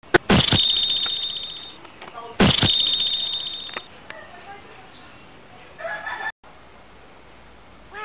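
An edited-in dramatic sound effect played twice, each time a sharp hit followed by a high ringing tone that fades over about a second and a half.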